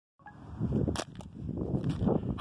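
Rustling and handling noise from a handheld phone being moved about over gravel, with one sharp click about a second in and a few smaller clicks after it.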